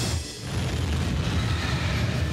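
A deep, steady cinematic rumble under a music score, from a film clip's soundtrack.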